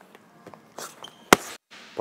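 A boxing glove punch landing on a focus mitt: one sharp, loud smack about a second and a third in, with a softer scuff of a step on the gym floor just before it.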